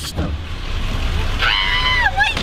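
A dog whining: a high, drawn-out cry that starts about one and a half seconds in, the dog excited at its owner's return. Under it runs the low rumble of the car idling.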